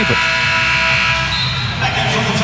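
Basketball arena horn sounding during a dead ball: a steady horn of several tones held together that stops about a second and a half in, over crowd noise.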